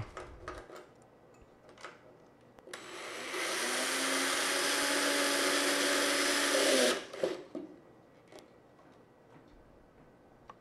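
Cordless drill driving a screw through a metal bracket into a molly bolt in drywall. The motor starts about three seconds in, runs steadily for about four seconds and stops suddenly, with a few faint clicks before and after.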